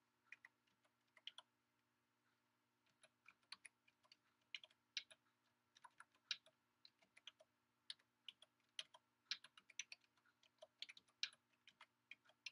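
Computer keyboard keys clicking faintly as a command is typed, in quick irregular runs of keystrokes with a short pause about two seconds in.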